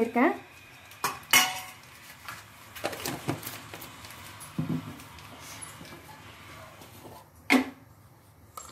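A metal spoon clinking against an aluminium pressure cooker pot a few times, irregularly spaced, with one sharp clink near the end.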